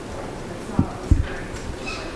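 Two dull thumps about a third of a second apart, typical of a desk microphone being handled and adjusted, with faint voices in the room.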